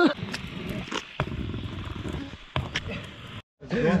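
A man's breathy, rasping laughter, with a few sharp knocks. The sound drops out briefly near the end.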